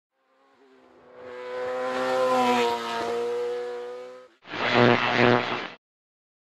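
A car engine holding a steady note swells up over a couple of seconds and fades away. It is followed by a short, louder burst of engine sound with two peaks that cuts off abruptly.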